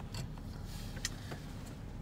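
The car's 3800 V6 idling, heard from inside the cabin as a faint, steady low hum, with a few light clicks.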